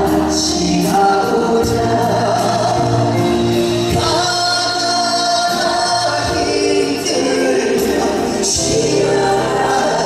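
A male vocalist singing a Korean trot ballad live with band accompaniment, including strings and keyboard, holding long notes.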